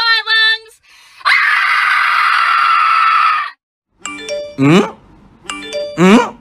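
A short sung phrase, then a loud drawn-out scream of about two seconds that cuts off sharply. After a brief gap, a chiming music loop starts, a ding-dong figure with a rising swoop repeating about every second and a half.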